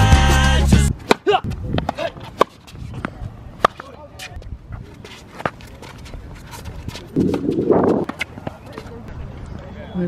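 Background music cuts off about a second in. After that come sharp, irregular pops of a tennis ball being struck by racquets and bouncing on a hard court, with a short rushing noise about three quarters of the way through.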